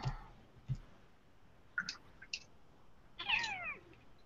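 A cat meows once near the end, a short call that falls in pitch, after a few faint clicks.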